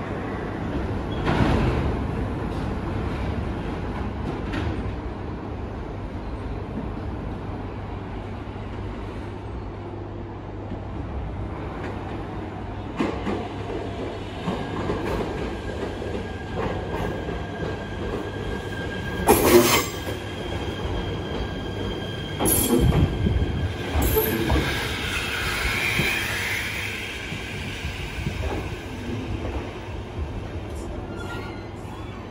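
JR East E127 series electric train pulling into the platform, rumbling closer. A steady high-pitched wheel squeal runs through the middle stretch as it comes in, with several sharp, loud clanks from the train about two-thirds of the way through.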